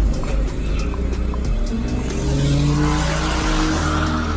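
A car's engine revving hard, rising in pitch about halfway through, with tyre squeal building in the second half as the car speeds off, over background music.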